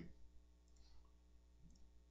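Near silence with two faint computer mouse clicks about a second apart.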